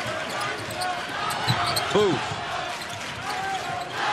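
Basketball being dribbled on a hardwood court, with steady arena background noise.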